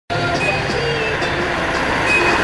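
Street traffic ambience: steady engine and road noise from cars and motorcycles, with scattered indistinct voices and tones mixed in.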